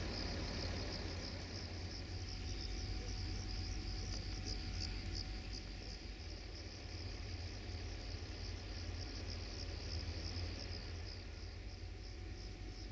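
Crickets chirping steadily, a continuous high-pitched trill, over a low, steady rumble.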